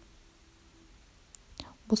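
Near silence with faint room tone, a couple of soft clicks about a second and a half in, then a woman's voice starts right at the end.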